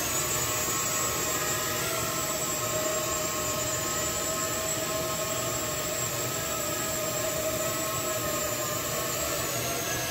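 Small Corvus quadcopter drone's propellers whining steadily as it lifts off and flies, a whine made of several pitches over a rushing hiss, shifting slightly in pitch near the end.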